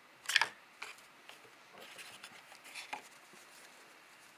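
Hands handling small cardboard boxes and a cloth drawstring pouch: a sharp tap about a third of a second in, a few lighter clicks, and soft rustling of the cloth.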